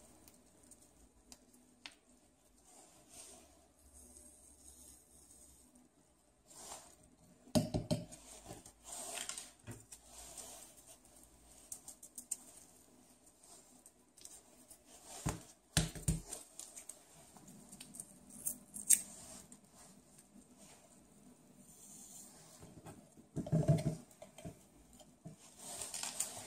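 Small handling noises as reagent powder packets are opened and emptied into plastic sample bottles: light rustling and ticking, with a few louder knocks against the bench about eight seconds in, around fifteen seconds, and near the end.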